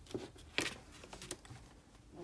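A fine-tip marker making short strokes on paper, with about half a dozen light clicks and paper rustles in the first second and a half.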